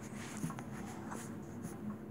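Faint scratchy rustling and a few light clicks as small plastic Shopkins toy figures are handled by hand and shifted over a fuzzy blanket.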